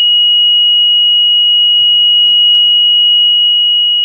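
A loud, steady 2,900 Hz sine test tone, generated and played through a loudspeaker and held at one pitch throughout. It is a single pure whistle-like note.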